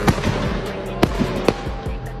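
A car's exhaust popping and cracking on overrun from an aggressive burble tune, with several sharp bangs: one at the start, one about a second in and one about a second and a half in. The pops are unburnt fuel igniting in the exhaust when the driver lets off the gas. Background music plays underneath.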